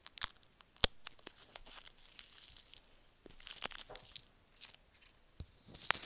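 Potato-starch packing peanuts being squeezed and crushed by hand: sharp snaps just after the start and near one second in, then irregular crackling crunches.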